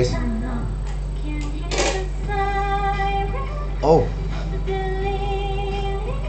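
Female pop vocalist singing into a studio microphone during a recording take: two long held notes, each about a second, over a steady low hum.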